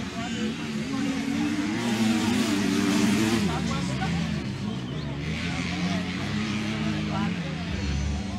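Motocross bike engines revving as riders race round the track. The engine note climbs to its loudest about two to three seconds in, then drops back and keeps running under the next riders.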